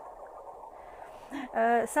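Faint music accompaniment from a 3D coloring-book app, heard as a thin midrange wash through a phone's small speaker. About a second and a half in, a woman starts speaking over it.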